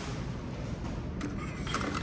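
Steady low background hum of a shop's interior, with a few faint clicks about a second in and near the end.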